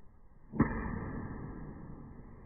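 A single sharp thud from a spinning back kick about half a second in, followed by a lower rustle that fades.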